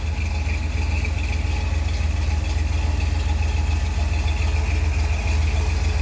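Custom Jeep CJ7's 350 cubic-inch Chevrolet V8, built with a 282 cam and breathing through a Magnaflow dual exhaust, idling steadily with an even low throb.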